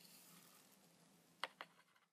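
Near silence with faint room hiss, broken by two short sharp clicks in quick succession about a second and a half in.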